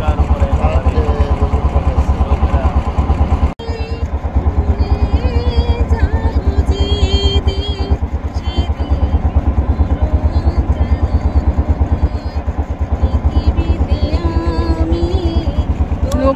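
Engine of a wooden river boat running steadily, a rapid, even low thudding, with a brief break about three and a half seconds in.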